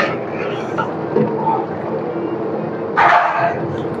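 Chicken curry bubbling steadily in a large aluminium pot on a gas burner while a ladle stirs it. A short, louder sound breaks in about three seconds in.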